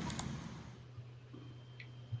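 A faint steady low hum with a soft click about a second in.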